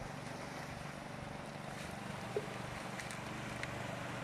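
Steady low hum of a distant boat engine over light wind and gentle water at a rocky shore, with one small sharp click a little past halfway and two fainter ticks near the end.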